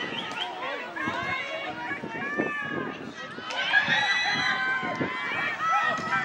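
Several high voices of field hockey players and spectators shouting and calling over one another, louder from about three and a half seconds in, with a few sharp clicks among them.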